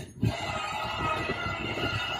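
RV slide-out motor running steadily as the room extends, started from the wall switch panel a moment in.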